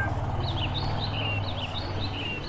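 Small birds chirping: short, high calls with quick pitch slides, several a second, over a low steady hum.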